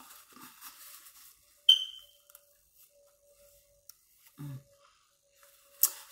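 Quiet room with faint handling noise. One sharp click with a brief ringing tone about two seconds in, and a short low voice sound a little after four seconds.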